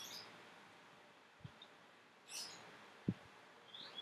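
Faint room hiss with a few short, high chirps like a small bird's and two soft, brief low thumps.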